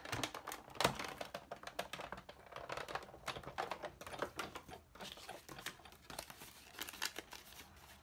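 Big Shot die-cutting machine being hand-cranked, pressing the cutting plates and a metal circle framelit die through its rollers to cut through two layers of cardstock at once. It gives an irregular run of small clicks and creaks, with a sharper click about a second in.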